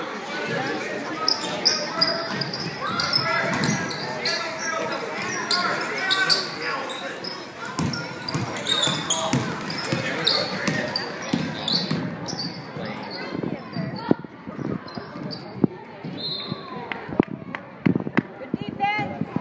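Basketball game in a gym: a ball dribbling on the hardwood floor with repeated sharp bounces, among calling voices of players and spectators.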